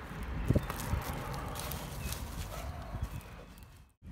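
Hands scooping and patting wood mulch and dry leaves around a seedling, a rustling crackle with scattered small knocks that fades near the end.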